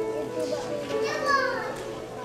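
Background music with children's voices over it; about a second in, one voice calls out in a long falling note.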